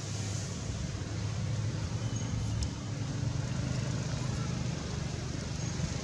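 Steady low rumble of a motor vehicle engine running nearby, under an even background hiss, with a faint short high chirp about two seconds in.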